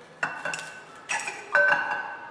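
Glass bottle splitting from thermal shock as it is plunged into cold water after being heated along a burnt string, with its pieces knocking against a glass bowl: three sharp clinks with a ringing tone, about a quarter second, a second and a second and a half in, the last the loudest.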